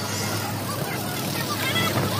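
Suburban local train running, a steady running noise heard from inside the carriage, with passengers' voices in the background.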